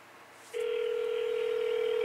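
Telephone dial tone: one steady, unwavering tone that starts abruptly about half a second in and cuts off about a second and a half later.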